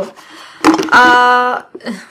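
A shampoo bottle falling over with a short, sharp knock, followed at once by a woman's loud, drawn-out "aaa" held on one pitch.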